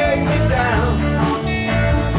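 Live rock band playing: electric guitars and drums, with male voices singing a wavering line through the first part.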